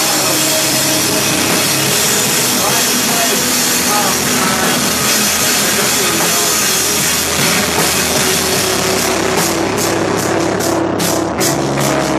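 Live screamo band playing at full volume, drums and cymbals under a dense wall of distorted sound. About nine seconds in, the drummer switches to separate, even cymbal strokes at about three a second.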